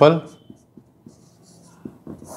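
Marker pen writing on a whiteboard: faint scratchy strokes, with a light tap of the tip near the end.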